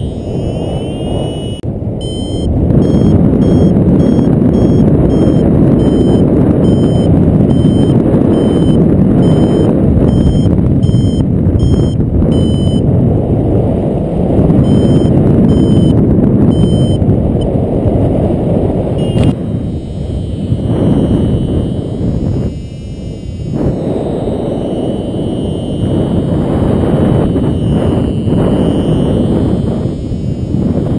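Wind buffeting the action camera's microphone in flight, with a paragliding variometer beeping a short high tone about once a second, its climb signal in lift, until the beeps stop just past the middle.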